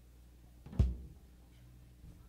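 A single low drum hit on stage a little under a second in, dying away quickly, over a steady low hum on the live recording.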